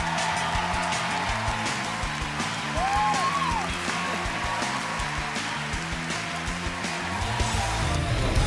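Upbeat music with a steady beat and a moving bass line, and a short sliding sound that rises and falls about three seconds in.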